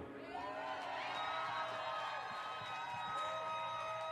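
Festival audience cheering and whooping, faint and distant, right after the band's song stops.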